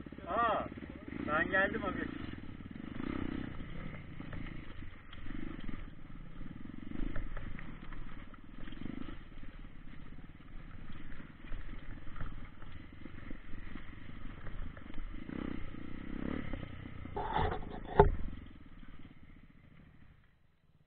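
Dirt bike engine running at low speed on a rough trail, a steady uneven rumble, with a sharp knock near the end.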